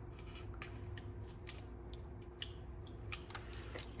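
Faint, scattered light ticks and rustles of card-stock pieces being handled and pressed down onto a card on a tabletop.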